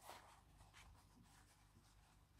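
Near silence with faint, soft rustling of cotton fabric pieces being handled and rubbed together.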